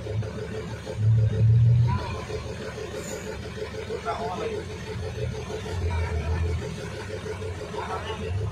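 A motor vehicle engine running with a steady low rumble that swells louder at times, with indistinct voices now and then.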